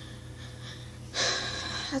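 A woman's audible breath, a breathy gasp lasting under a second, about halfway through after a short quiet pause.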